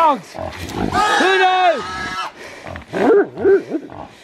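Caught feral pig squealing as hunting dogs hold it: one long squeal about a second in, then a run of short squeals near the end.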